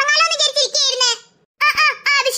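A high-pitched cartoon character's voice talking, with a brief break about a second and a half in.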